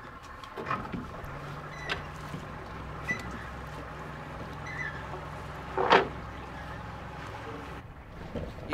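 Boat's outboard motor running steadily at low speed, a low even hum. One short, loud sound cuts across it about six seconds in.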